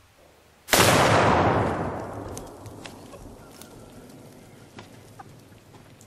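A single loud rifle shot about three-quarters of a second in, with a long rumbling decay that fades over a second or two, followed by a few faint clicks.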